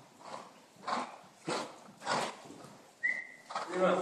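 A horse cantering on sand footing, its strides coming as short sounds about every two-thirds of a second. A brief high tone comes about three seconds in, and a voice is heard near the end.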